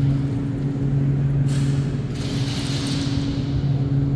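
Steady low mechanical hum made of two unchanging tones, with a faint hiss that swells about halfway through.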